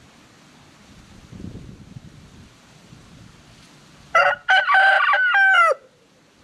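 A rooster crows once, about four seconds in: a short first note, then a longer held note that falls away at the end. The crow is squeaky, which the owner wonders is down to a cold.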